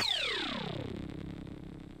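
Retro 8-bit chiptune sound effect: a buzzy tone sweeps steeply downward in pitch over about a second, then settles into a low tone that fades away. It is the kind of falling 'game over' sound that marks a character going down, here the pixel old man collapsing.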